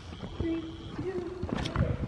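A horse cantering on soft arena sand, its hoofbeats coming as dull, muffled thuds as it approaches a low jump.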